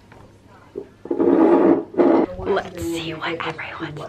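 A young woman's voice, loud, starting about a second in after a quiet moment with only a low background hum.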